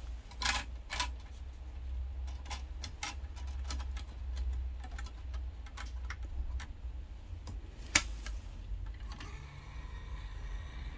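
Plastic clicks and taps of a compact disc being handled and pressed onto the spindle in the open tray of a 1995 CEC Chuo Denki 550CD CD player, with a sharp click about eight seconds in.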